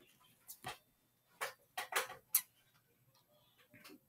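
A handful of short, irregular clicks and taps, spaced unevenly, with quiet gaps between them.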